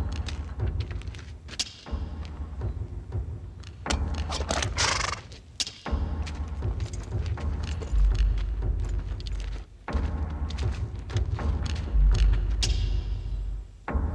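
Film soundtrack music with deep, repeated drum thumps, and a hissing swell about five seconds in and another near the end.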